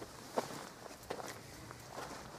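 Footsteps on dry, stony dirt ground: a few separate, fairly quiet steps as a person walks.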